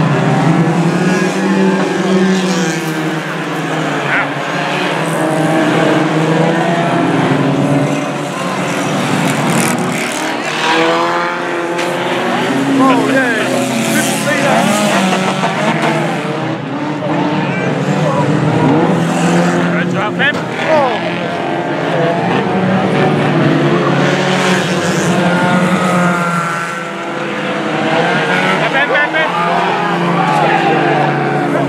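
Several banger racing cars' engines running hard together, their pitch rising and falling as they rev and lift off, with tyres skidding on the track.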